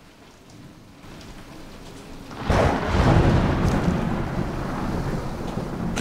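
Heavy rain with a roll of thunder that breaks in suddenly about two and a half seconds in, then rumbles on under the downpour.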